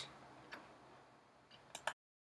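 Near silence with faint room hiss, broken by a brief click about half a second in and two quick clicks just before the end.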